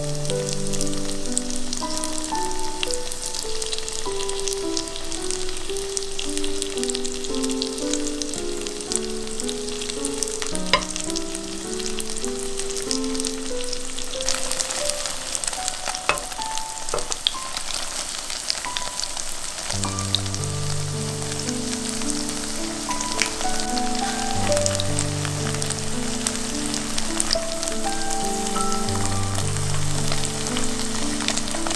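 Squares of tofu frying in oil on a hot iron plate under a minced seasoning, with a steady sizzle full of small crackles and pops. The sizzle grows louder about halfway through. A soft background melody plays underneath.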